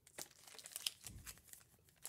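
Yu-Gi-Oh booster pack's foil wrapper crinkling faintly and irregularly as it is picked up and handled.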